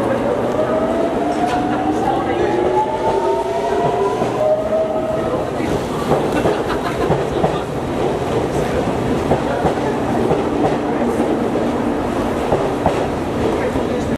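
Electric commuter train moving on the platform track: a whine rising in pitch over the first five seconds or so, then a steady irregular clatter of wheels on the rails.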